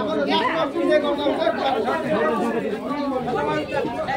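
Several people talking at once, their voices overlapping in steady chatter.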